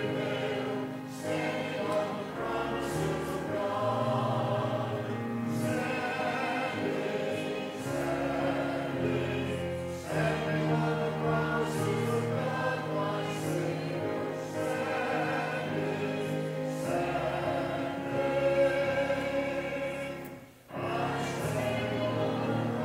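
Church congregation singing a hymn together in long, sustained phrases, with a short break between phrases near the end.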